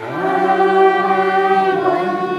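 A group of young children singing a Christmas song together over instrumental backing, holding one long note through most of the moment.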